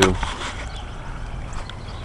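Outdoor background noise: a steady low rumble with a few faint, short high-pitched ticks or chirps.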